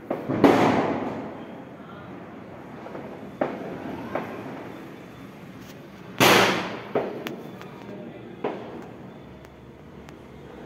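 Firecrackers going off: two loud bangs about six seconds apart, each trailing off over about a second, with several smaller, sharper cracks between and after them.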